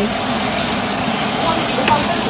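Cabbage frying in bacon grease and butter in a pot, a steady sizzling hiss, while a wooden spoon stirs it.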